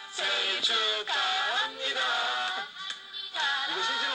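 Singing over music, a birthday song, heard through a television speaker.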